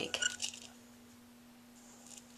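Loose flameworked glass pieces clinking lightly as they tumble in a kaleidoscope's dry-cell object chamber while it is turned: a few small chinks in the first half second, then quiet.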